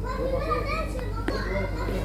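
Children's voices chattering and calling, high-pitched, over a steady low hum, with two brief clicks about a second in.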